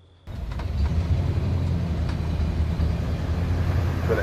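A 1971 Ford Bronco's engine running steadily as the truck drives along the road toward the camera, a low rumble with road noise that starts suddenly a moment in.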